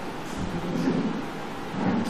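A pause in a man's speech, filled by a steady hiss of background noise, with faint low sounds about half a second in and again near the end.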